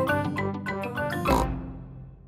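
Short, bright cartoon theme jingle of quick pitched notes, with a pig's snort about one and a half seconds in, fading out at the end.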